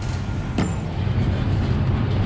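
Steady low rumble of café room noise, with one sharp knock a little over half a second in.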